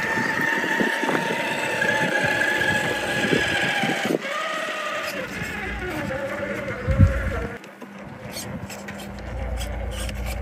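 A 1/10-scale RC rock crawler's electric motor whining as it climbs the rocks. The pitch holds steady for about four seconds, then wavers lower, and there is a thump about seven seconds in.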